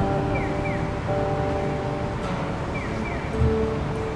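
Acoustic guitars playing an instrumental passage, chords ringing and held for about a second each, with short sliding squeaks along the strings.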